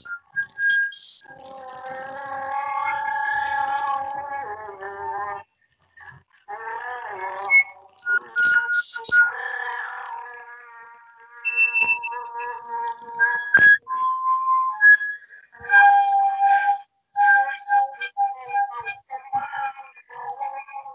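Sopranino flute playing a fragmented contemporary piece: short high notes, clicks and held tones broken up by brief pauses, with a denser, many-toned held sound early on.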